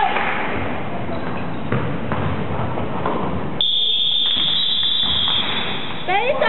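Basketball play in an echoing sports hall, with a few thuds of the ball and feet, then about three and a half seconds in a single steady high-pitched signal tone sounds for nearly two seconds and stops.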